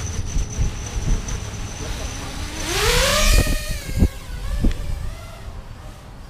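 FPV racing quadcopter's brushless motors idling with a steady high whine, then throttled up hard: the whine rises in pitch with a loud rush of prop wash as the quad lifts off and climbs away, loudest about three seconds in. A few low thumps of prop wash buffeting the microphone follow as the sound fades.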